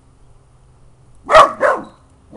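A seven-month-old dachshund-beagle-terrier mix puppy barks twice in quick succession, a little over a second in.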